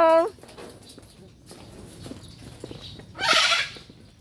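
A blue-and-yellow macaw giving one short, harsh squawk about three seconds in.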